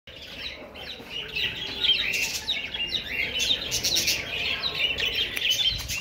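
A flock of cockatiels and budgerigars chirping and chattering, many short overlapping calls at once, growing louder after the first second.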